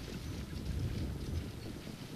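Low, steady rumble of a field of harness-racing trotters and their sulkies going past on the track, mixed with wind on the microphone.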